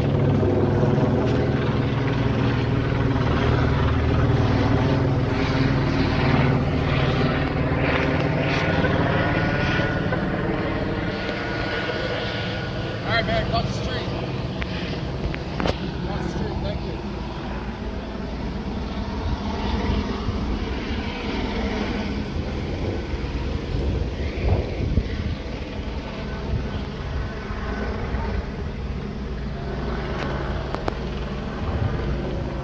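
A steady low engine drone from a motor vehicle or aircraft, loudest over the first ten seconds or so and easing off gradually after that, with faint voices.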